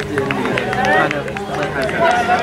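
Several people talking and calling out, with a scatter of short, sharp ticks among the voices.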